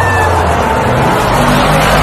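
Car engine running loudly over a steady rushing road noise.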